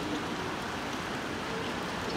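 Steady outdoor background noise, an even hiss without distinct knocks or bounces.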